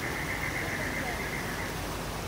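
Steady outdoor background hiss, like running water, with a faint steady high-pitched tone that fades out near the end.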